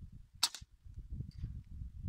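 A single suppressed shot from a Kral Puncher Jumbo PCP air rifle fitted with a Next Level harmonic-tuning silencer: one sharp crack about half a second in, followed by a few faint ticks about a second later.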